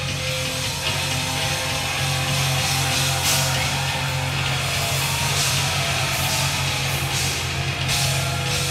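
Rock band playing live without vocals: electric guitar, bass guitar and drum kit at full volume, with a cymbal crash about every two seconds.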